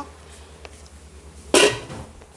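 Chicken tails and skin boiling in water in an open frying pan, a soft steady bubbling. About a second and a half in, a short loud burst of noise cuts across it.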